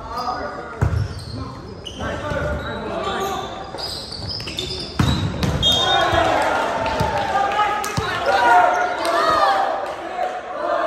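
Indoor volleyball play in a gymnasium: several voices calling and shouting, with sharp thuds of the volleyball about a second in and again around five, seven and eight seconds. The voices are loudest in the second half.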